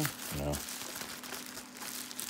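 Plastic bubble wrap crinkling and rustling as it is handled and worked loose from around a wrapped item, with uneven light crackles.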